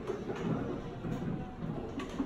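Faint, indistinct voices in a room, with no clear words, in a lull between radio messages.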